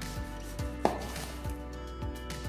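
Kitchen knife slicing through an orange on a plastic cutting board, with several soft knocks of the blade reaching the board, the sharpest a little under a second in.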